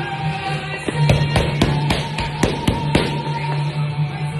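Background music, with a quick run of about eight sharp smacks over two seconds, roughly four a second: boxing gloves hitting focus mitts in a pad-work combination.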